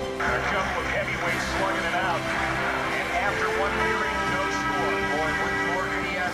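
Background music with the noise of a cheering, shouting arena crowd that comes in suddenly just after the start and carries on throughout.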